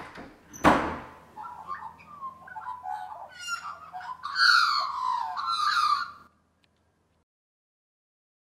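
A sharp thump, like a door shutting, a little under a second in. Then Australian magpies carolling with warbling, gliding calls that are loudest between about four and six seconds in and stop a little after six seconds.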